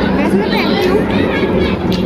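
People talking: voices and chatter, with a steady low hum underneath.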